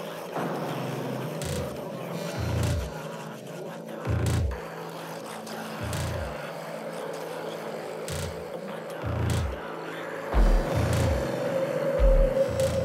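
Electronic Congo Techno beat playing in a studio: deep bass hits that drop in pitch land at uneven intervals over a held synth tone. Faint sharp percussion clicks sit on top, and the tone swells and starts to rise in pitch near the end.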